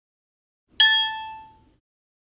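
A single bright chime from a DVD menu, struck once about a second in and fading away within a second.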